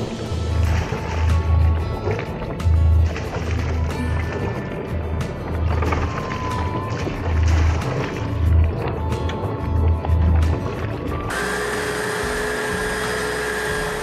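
Background music with a steady beat. About eleven seconds in, it gives way suddenly to the steady, even whine of the Anchormatic stern windlass's electric motor winding the webbing anchor band back onto its drum.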